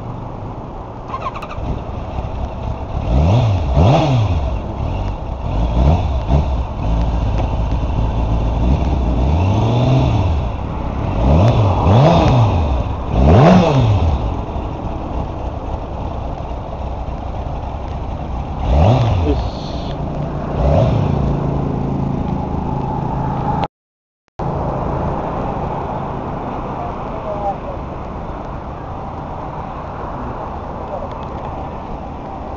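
Kawasaki ZX-11's inline-four engine running at idle and revved with quick throttle blips. The revs rise and fall sharply several times in the first twenty seconds, then settle to a steady idle.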